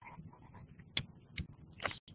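A few faint clicks and scratches of a stylus writing on a pen tablet.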